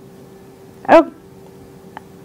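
A pause with a faint steady hum, broken about a second in by one short, loud pitched cry that falls in pitch.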